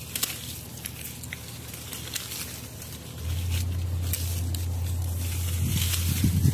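Lemon tree leaves and branches rustling and brushing against the phone as the tree is handled for pruning, with scattered light clicks. Under it runs a steady low hum that gets louder about three seconds in.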